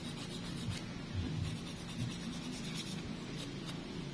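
Emery board rasping against a toenail in repeated strokes as the nail is filed.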